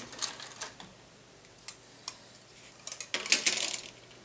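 Plastic model-kit sprue clicking and rattling as it is handled and laid down on a cutting mat: a few light clicks, then a burst of clatter about three seconds in.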